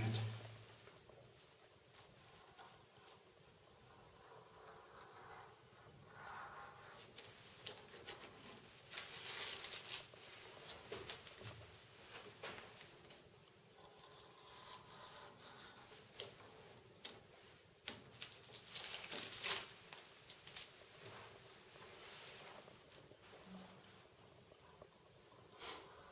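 A sharp knife trimming excess pressure-sensitive laminate sheet: faint, scattered short scraping strokes and light clicks, the two clearest about nine and nineteen seconds in.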